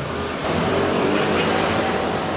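Street traffic: a motor vehicle's engine running close by, its steady hum coming up about half a second in over the general traffic noise.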